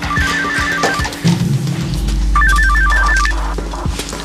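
Mobile phone ringing with an electronic ringtone: two short bursts of quickly alternating beeps about two seconds apart, over background music with a low drone.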